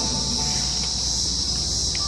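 Cicadas buzzing in a steady, high-pitched drone.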